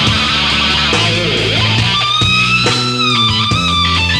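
A live grunge rock band plays an instrumental passage: distorted electric guitar over bass guitar and drums. From about halfway, held lead guitar notes bend up and down in pitch.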